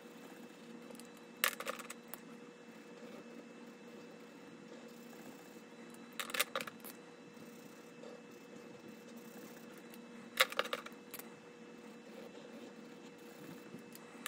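Short groups of sharp clicking taps about every four seconds, from a marker being used to colour in small icons on a paper savings-challenge sheet, over a faint steady hum.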